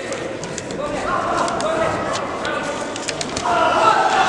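Indistinct voices calling and shouting in a sports hall, with scattered short sharp clicks; the voices get louder near the end.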